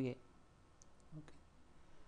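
A few faint clicks of a computer mouse, spread over about a second.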